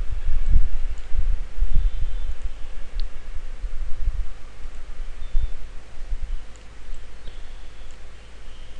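Irregular low thumps and rustling close to the microphone, with a single sharp click about three seconds in, growing fainter toward the end.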